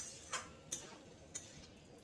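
Metal spatula clinking against the side of a metal wok as chicken pieces are stirred: four sharp, unevenly spaced clinks.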